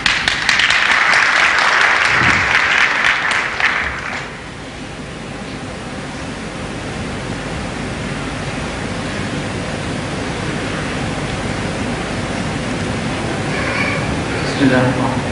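Audience applauding, loud for about four seconds, then giving way to a steady hiss.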